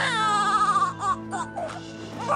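Newborn baby crying: one long wail of almost a second, then a few short broken cries, over background music with sustained low notes.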